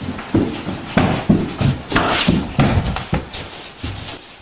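Quick footsteps thudding on a hardwood floor, an irregular run of knocks.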